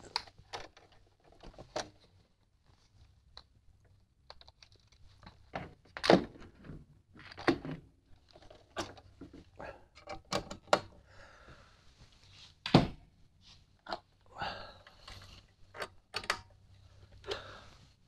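Irregular clicks, knocks and rustles of guitar cables and jack plugs being handled and plugged in while a small amp head is connected to a speaker cabinet, with a sharper knock about six seconds in and the loudest about thirteen seconds in.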